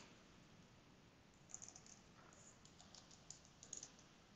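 Faint computer keyboard typing: a quick run of key clicks starting about a second and a half in, after near silence.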